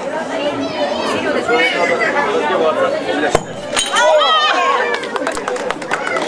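A white plate stamped on underfoot and smashing with a sharp crack about three seconds in, over the chatter of a crowd.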